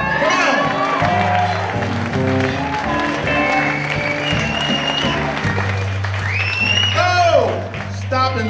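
Live blues band playing: a harmonica played cupped against a microphone, bending and holding notes over a stepping bass line.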